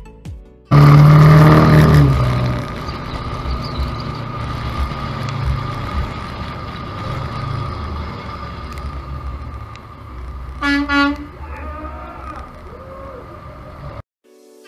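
Diesel pickup (Duramax LB7 turbodiesel) driving while towing a car, heard as a loud, steady mix of engine and road noise with a faint steady whine. It cuts in suddenly about a second in, with the engine note rising and falling for the first couple of seconds. A vehicle horn beeps briefly about eleven seconds in.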